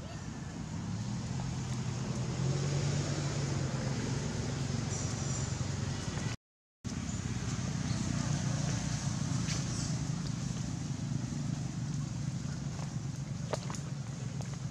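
A steady low hum under an even hiss, with a few faint clicks. The sound cuts out completely for about half a second midway.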